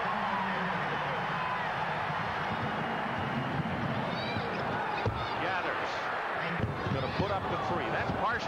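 Arena crowd noise at a basketball game, with the ball bouncing on the hardwood court. There are short high squeaks around the middle and a sharp thump about five seconds in, then a few lighter knocks.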